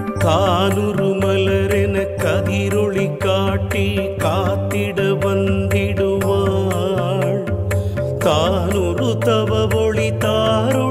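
Women singing a Sanskrit devotional hymn to the goddess Devi in Carnatic style, with wavering, ornamented notes over instrumental accompaniment and a steady low bass line.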